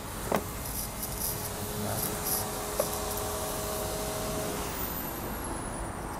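Outdoor street background noise with a faint steady hum lasting a few seconds and a sharp click near the start.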